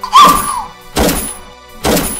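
Three heavy thuds about a second apart, film sound effects of blows landing in a violent attack, over background music. A short cry follows the first thud.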